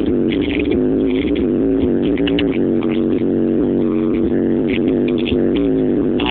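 Electronic music with a steady beat playing through a minivan's car stereo and subwoofer, heard inside the cabin, with sustained low notes and deep bass.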